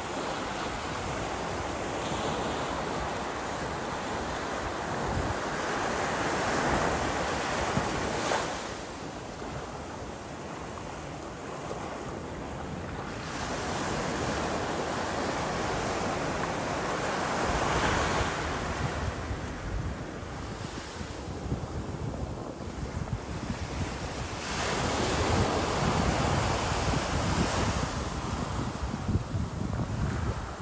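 Small waves breaking and washing up a sandy beach, swelling and ebbing in several surges, with wind buffeting the microphone.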